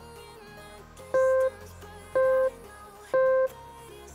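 Three identical short electronic beeps about a second apart from a rest countdown timer, marking the final seconds before the next exercise begins. Quieter background music plays under them.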